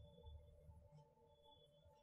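Near silence: faint room tone with a steady faint hum.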